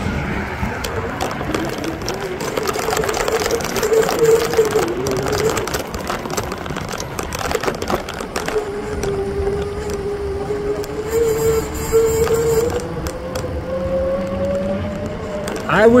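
Road traffic with one vehicle's engine note: it wavers at first, then rises slowly and steadily in pitch over the second half. Knocks and rustle come from the handheld camera as it is carried along the roadside.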